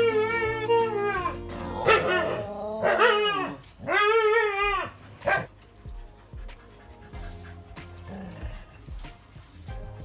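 Hokkaido dog howling: about four drawn-out cries in the first five seconds, each rising and then falling in pitch, with a short one near the end of the run.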